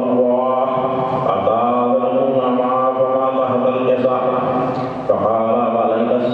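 A man chanting a religious recitation in a melodic voice into a microphone, holding long drawn-out notes, with a brief pause for breath near the end.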